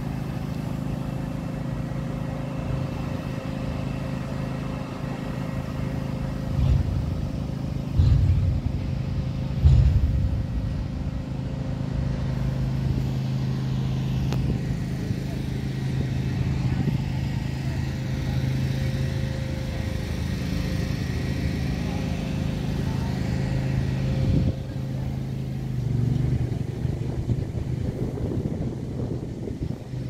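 A steady low engine hum with people talking, broken by a few brief low bumps.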